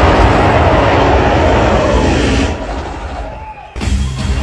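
A loud rush of noise over a low bass beat in a dance routine's soundtrack. It fades out about two and a half seconds in, and the band music cuts back in sharply near the end.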